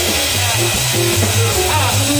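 Small jazz band playing up-tempo, heard from right beside the drum kit: drums and cymbals played with sticks over a stepping double-bass line, with a melodic line from guitar or horn above.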